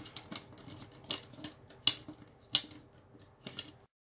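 Small plastic bags of resin diamond-painting drills being handled, giving a handful of sharp crinkles and clicks about a second apart. The sound cuts off suddenly near the end.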